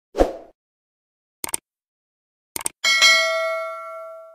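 Stock subscribe-button animation sound effects: a short downward swoosh, two sharp clicks about a second apart, then a bright bell ding that rings on and slowly fades.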